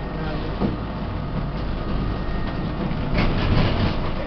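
A city tram running along its rails, a steady rumble of wheels and car body heard from on board, getting louder and rougher for about the last second.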